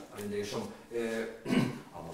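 Speech: a man talking, with a short, rougher vocal burst about one and a half seconds in.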